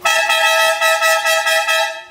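Triple-trumpet 'verdureiro' air horn on a Renault Master van (three trumpets fed by one electric compressor motor) sounding a single steady chord of several tones for about two seconds, then cutting off.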